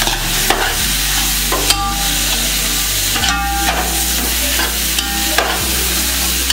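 Frying onions and tomatoes sizzling in a large aluminium pot as liquid is poured in and steams, with a metal spatula stirring and knocking against the pot a few times.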